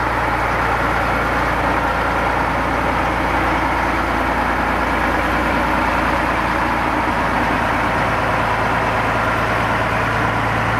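Small Planet diesel shunting locomotive's engine running steadily at low revs as it moves slowly along the track, coupled to a diesel multiple unit.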